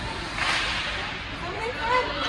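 Hockey skates scraping the ice: one short, hissy swish about half a second in, with rink noise around it.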